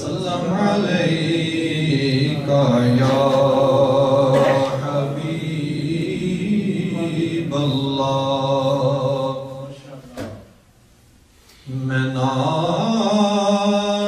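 A man chanting a naat, an Urdu devotional poem, in long drawn-out melodic notes. There is a brief pause about ten seconds in.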